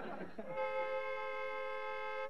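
Doorbell ringing: one steady, unchanging multi-tone ring that starts about half a second in and holds for nearly two seconds.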